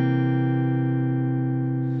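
A C7 chord on a clean electric guitar rings out and slowly fades, then is cut off near the end.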